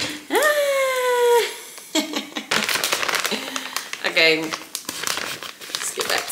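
A resealable plastic food pouch crinkling as it is handled and cut open with scissors. The sound comes as many short, sharp crackles through the second half.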